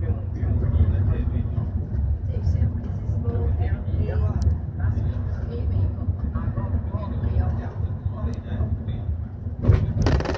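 Steady low rumble of a bus's engine and tyres heard from inside the cabin while driving, with people talking in the background. A brief loud clatter comes near the end.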